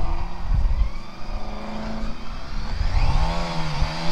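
BMW K1600GT's inline-six engine running at low speed through a roundabout turn. Its note rises and falls in pitch near the end as the throttle is opened and eased.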